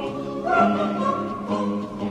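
Music: a choir singing sustained notes with orchestral accompaniment.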